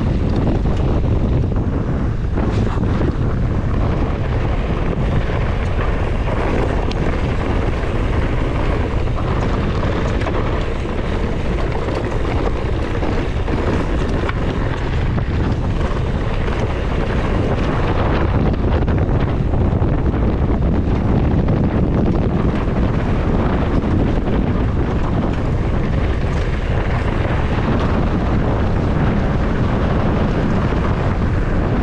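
Wind buffeting the microphone of a mountain bike descending a rocky dirt trail at speed, over the steady rumble of tyres on loose dirt and stones, with scattered small rattles and knocks from the bike.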